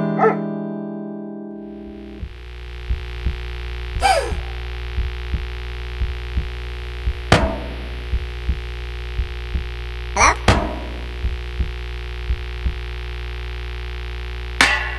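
Cartoon soundtrack: a short music cue ends at the start. A steady low droning hum follows, broken by irregular soft low thuds and three loud swishing hits, at about four, seven and ten seconds in.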